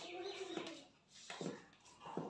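Dough being kneaded by hand in a metal pan, with a soft thump about one and a half seconds in. At the start a low, steady coo-like tone holds for about half a second, then stops.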